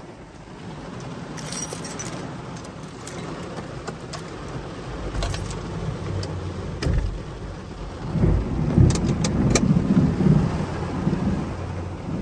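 Heavy rain drumming on a car's roof and windshield, heard from inside the car, with scattered sharp ticks. From about halfway in, a low thunder rumble builds and is louder in the last few seconds.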